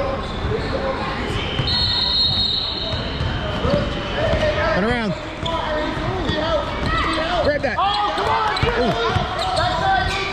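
Basketball being dribbled on a hardwood gym floor, with sneakers squeaking in short chirps from about four seconds in, over spectators' chatter echoing in a large gym.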